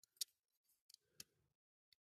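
Faint, sharp little clicks, four or so, with the clearest just after the start, as small plastic light lenses are worked out of a diecast model car body.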